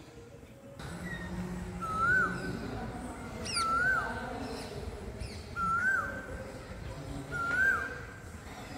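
Asian koel (kuyil) calling four times, a rising-then-falling note about every two seconds. Brief high parakeet calls come just past the middle.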